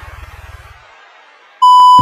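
A low rumble and hiss from an intro sound effect fades out. Near the end a loud, steady test-tone beep starts: the tone that accompanies TV colour bars.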